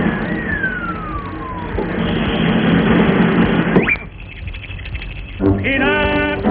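Cartoon sound effects for a high dive: a long falling whistle as the tiny diver drops, over a rushing noise that swells and is cut off by a quick rising whistle. Band music with strings starts up near the end.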